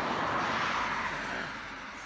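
A sedan passing by on the road, its tyre and engine noise loudest at the start and fading away over about two seconds.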